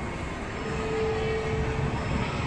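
Steady ambient noise of a busy indoor shopping mall: a broad hum of crowd and ventilation, with a faint held tone for about a second in the middle.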